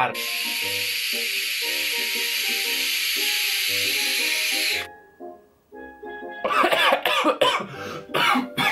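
A long, steady hiss of a drag being drawn on a vape for almost five seconds, with background music underneath. It stops abruptly, and after a short pause comes a burst of coughing: the drag has gone down badly.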